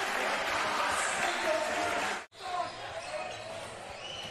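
Live indoor basketball game sound: crowd and court noise with a basketball bouncing. It cuts out abruptly for a moment a little past halfway, then carries on quieter.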